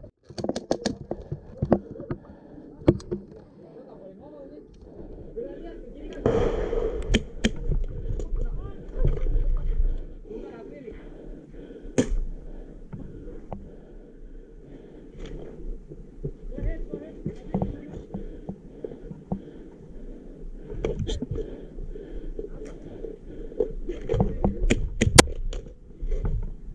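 Airsoft guns firing in scattered single sharp cracks across the field, over a steady low rumble of wind and movement at the microphone.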